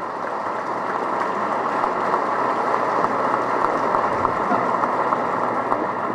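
Audience applauding steadily, swelling slightly at first and easing a little near the end.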